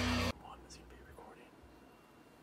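A short loud burst of amplified guitar playback that cuts off abruptly, followed by faint, low voices whispering.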